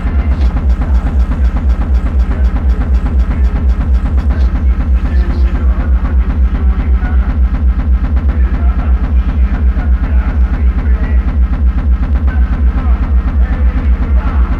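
Doomcore hardcore techno: a fast, steady kick drum with heavy bass under dark synth layers. The highest frequencies drop away about five seconds in.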